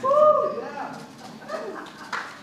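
A high-pitched human voice calls out a short 'ooh'-like sound that rises and falls, loudest right at the start. A few softer vocal sounds follow.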